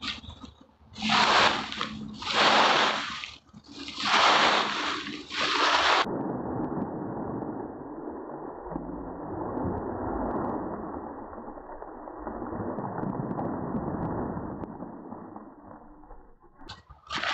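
Dry fallen leaves rustled and tossed by hand, four loud crisp rustling bursts in the first six seconds. Then the sound cuts abruptly to a steady, muffled rushing noise for the rest.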